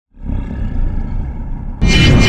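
Intro sound effect: a low rumbling roar fades in, then a sudden loud boom hits near the end.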